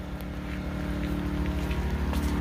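A steady low mechanical drone with a constant hum, as from a running motor or engine.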